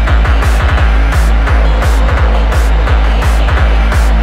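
Hardtek/free tekno DJ mix: a fast kick drum pounding about three times a second over a deep, continuous bass, with regular hiss-like hi-hat bursts on top.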